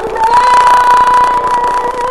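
A woman's voice singing one long held note that slides up slightly at the start, over a backing track.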